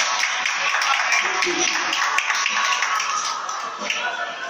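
Audience clapping, with a crowd's voices and music playing underneath.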